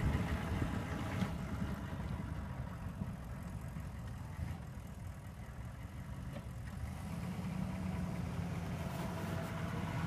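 Diesel pickup plow truck's engine running as the truck drives off pushing snow. The engine sound fades as it pulls away, then grows louder again over the last few seconds.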